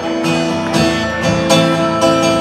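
Acoustic guitars strumming the accompaniment of a country song, with no singing in between the lines.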